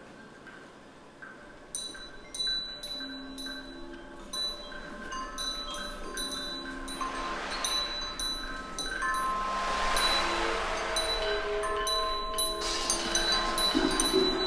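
Children striking small percussion instruments, chime-like ringing notes at several pitches, few at first and then overlapping and growing louder. A hissing, rushing sound swells under them in the middle.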